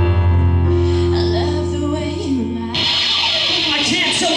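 Live band music: an electric keyboard holds sustained chords over a deep, steady bass note. About three seconds in, a bright, noisy wash of sound comes in over it.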